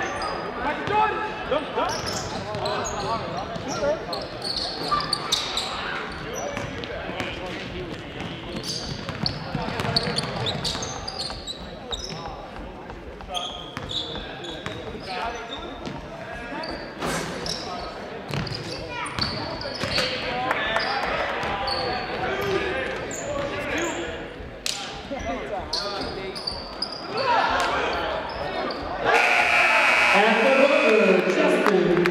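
Live basketball in a gymnasium: the ball bouncing on the hardwood floor and sneakers squeaking, over indistinct chatter from spectators, all echoing in the hall. The crowd noise gets louder about a second before the end.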